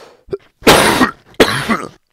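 A person coughing twice in quick succession, the first cough the louder.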